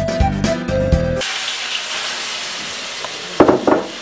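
Background music with a steady beat cuts off about a second in, giving way to shrimp sizzling in a stainless steel wok. Near the end come two loud, sharp knocks.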